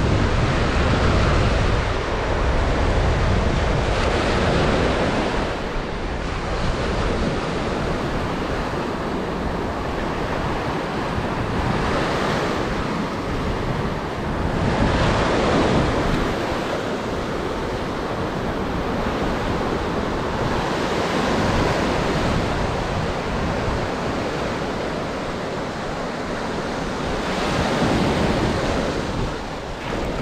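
Ocean surf breaking and washing up a sand beach: a steady rush that swells and eases every few seconds as each wave comes in.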